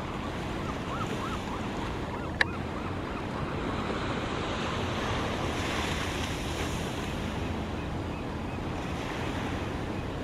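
Small waves washing over a pebble and rock shore, a steady rushing with some wind on the microphone. A single sharp click about two and a half seconds in.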